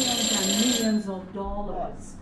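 Control-room alarm on the power plant's panels being tested, ringing steadily and cutting off about a second in.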